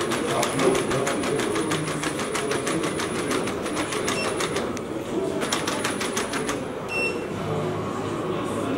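Unitree Go1 quadruped robot walking on a tile floor: a rapid, even clicking of its steps and leg motors with a high motor whine. The clicking runs for the first three and a half seconds, stops, and comes back for about a second a little past the middle.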